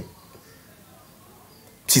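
A pause in a man's French speech: about two seconds of faint room hiss between phrases, with his voice cutting off at the start and coming back in just before the end.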